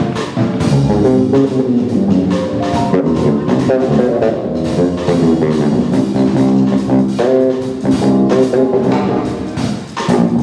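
A small jazz combo playing live: electric guitar and keyboard over a drum kit keeping a steady beat.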